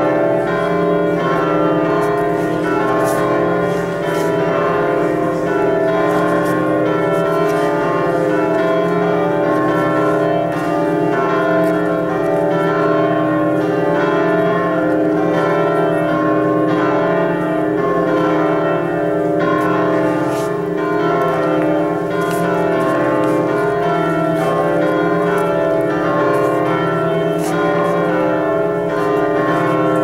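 Church music of sustained, ringing chord tones at a steady level.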